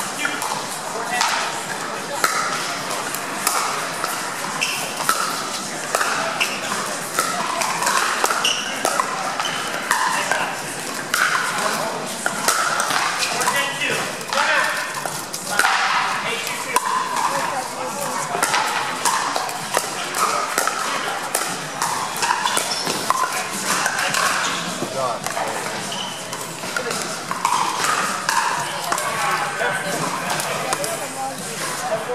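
Pickleball paddles popping against plastic balls, many sharp irregular hits from the surrounding play, over a steady background of crowd and player chatter that is not made out.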